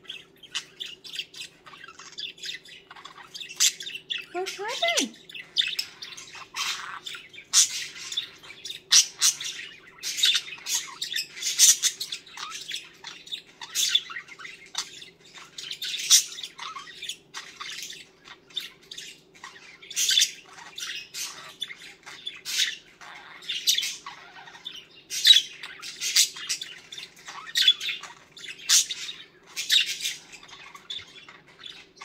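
Budgerigar chattering: a continuous run of short, sharp chirps and squawks, some much louder than others.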